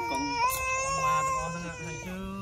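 A young child crying in a long, drawn-out wail that holds one pitch, with an adult voice talking low underneath.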